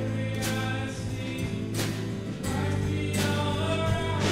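Contemporary worship band playing a song with singing: acoustic and electric guitars, bass guitar, keyboard and drum kit. Drum accents land about every second and a half.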